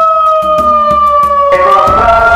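Megaphone's built-in siren wailing loudly: one pitched tone sliding slowly downward, then turning to rise again near the end.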